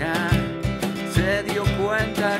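Music: an acoustic song on nylon-string criolla guitar over a steady low percussion beat about twice a second, with a wavering melody line on top.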